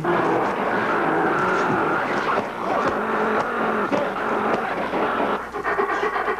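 Studio audience laughing loudly and steadily. Near the end, a different sound with rapid, even pulses takes over.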